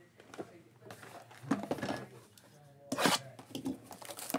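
Indistinct talking, then about three seconds in a brief sharp rip of plastic shrink wrap being torn open on a Panini Select trading-card box.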